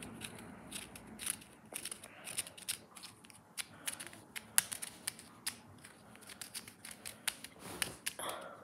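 3x3 plastic puzzle cube being twisted by hand: irregular sharp plastic clicks, a few a second.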